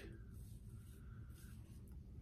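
Faint scraping of a Blackland Vector titanium single-edge razor cutting through lathered stubble on the cheek, in short strokes.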